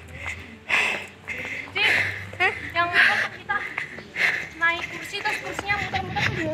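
Speech only: people's voices talking while walking, in words too unclear to make out, with a few breathy bursts.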